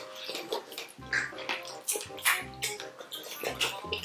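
Wet chewing, sucking and smacking of chicken feet in a thick spicy sauce, many short sticky clicks one after another, over background music with a repeating low beat.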